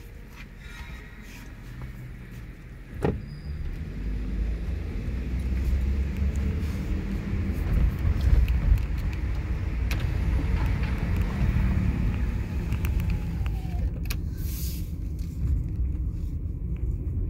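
Car heard from inside the cabin. It is quiet at first while stopped, then there is a sharp click about three seconds in. After that, low engine and road rumble builds as the car pulls away and drives on.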